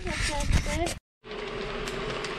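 Flies buzzing close to the microphone, the pitch wavering up and down as they circle. About halfway through the sound cuts off and is replaced by a quiet room with a steady hum.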